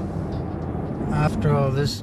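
Steady road and engine noise heard inside a moving car's cabin. A man's voice starts about a second in.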